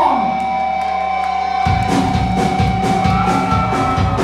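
Punk rock band playing live and loud: a guitar holds a steady sustained note, then about a second and a half in the drums and bass crash in and the full band drives on with a fast beat and cymbals.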